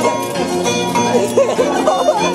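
Harp and violin playing a melody together: the harp's plucked notes under the bowed violin line, which glides and wavers in pitch.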